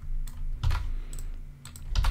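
Computer keyboard keys clicking: a handful of separate keystrokes.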